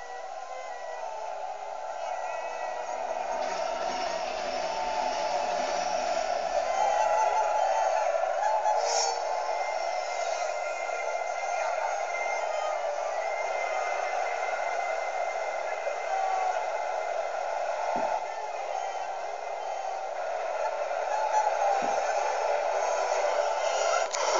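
A film soundtrack, a dense and continuous mix of score and action sound, playing through a laptop's small speakers and picked up by a phone's microphone. It swells over the first several seconds and then holds steady, with two brief low knocks near the end.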